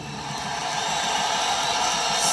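Audience noise from a live rock concert recording played on a vinyl record, rising steadily after the last guitar chord has died away.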